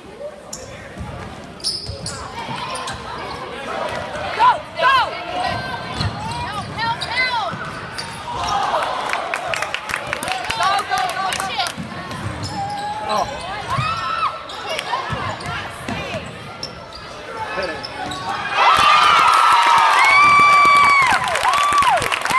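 Basketball game on a hardwood gym floor: the ball bouncing, sneakers squeaking in short rising-and-falling chirps, and spectators' voices. It gets louder about three-quarters of the way through, with longer squeaks and shouting.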